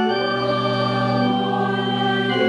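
Church organ playing a hymn in slow, sustained chords, with the choir singing along. The chord changes right at the start.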